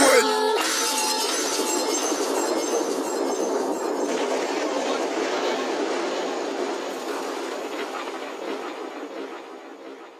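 The music cuts off at the start and gives way to a dense, thin-sounding noise with faint clattering, steady at first and then fading away over the last three seconds.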